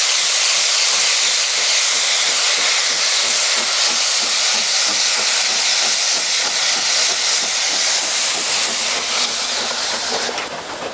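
Steam locomotive blowing off steam in a loud, steady hiss, easing near the end, as a steam tank engine rolls slowly past.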